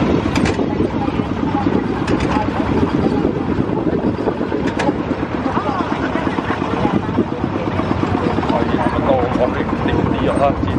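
Tractor engine running steadily with rapid, even pulses as it pulls a passenger trailer, with a few sharp knocks from the trailer jolting over the bumpy dirt road. Voices chatter near the end.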